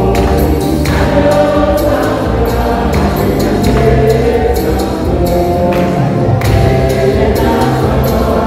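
Live church choir and congregation singing an upbeat gospel song to a steady percussion beat.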